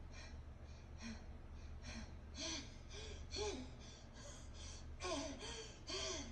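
A female anime character panting hard, with quick repeated breaths. About halfway through these turn into short strained gasps and groans, over a low steady hum.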